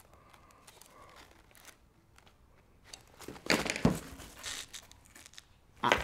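Nylon fabric of a mag pouch rustling and crinkling as it is flexed and turned over in the hands. There is faint handling for the first few seconds, then a louder burst of rustling about halfway through.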